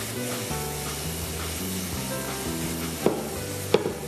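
Cubed cassava, bacon and cheese sizzling steadily as they fry in a hot pan while being stirred, with two short knocks near the end. Background music plays underneath.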